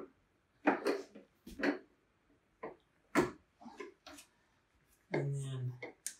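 A scattering of short plastic clicks and knocks from the release tabs and cover of a John Deere 3025E's fuse panel being pushed and worked by hand, with a brief muttered voice near the end.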